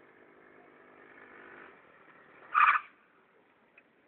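Yamaha Mio scooter engine running faintly and steadily while the rider holds a wheelie. A short, loud sharp sound breaks in about two and a half seconds in.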